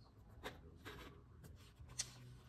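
Faint paper rubbing and a few soft taps as stickers are pressed and smoothed onto a journal page, with one sharper tap near the end.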